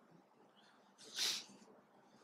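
One short, sharp nasal breath, like a sniff, about a second in, over faint room tone.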